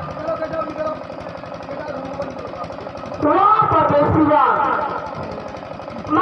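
A performer's voice over the stage loudspeakers, delivered in drawn-out, sliding pitch, from about three seconds in. A fast, steady low pulsing runs underneath, and a held musical note fades out in the first second.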